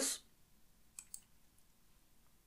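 Two quick, faint computer mouse clicks close together, about a second in.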